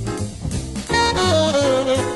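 Small-combo jazz from a vinyl record: tenor saxophone playing a swinging bebop line over walking upright bass and drums. The sax thins out briefly near the start, then comes back about a second in with a long note that bends slightly downward.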